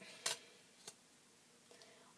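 Two short clicks: a sharper one about a quarter second in and a fainter one just before a second in.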